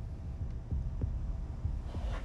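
Low hum in a film soundtrack, with a few soft, uneven low pulses.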